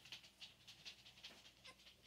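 Faint, irregular soft ticks and huffs, several a second, from three-and-a-half-week-old Scottish terrier puppies moving about on a blanket.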